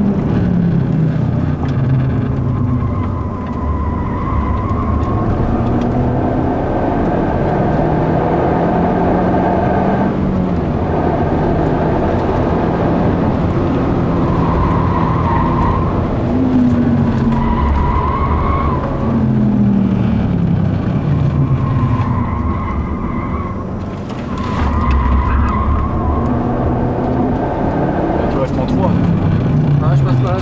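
Mazda 3 MPS's turbocharged 2.3-litre four-cylinder engine heard from inside the cabin, driven hard on track. Its pitch climbs under acceleration and drops back at each gear change or lift, again and again.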